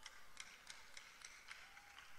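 Near silence: a pause in the sermon, with a few faint, irregular ticks over low room tone.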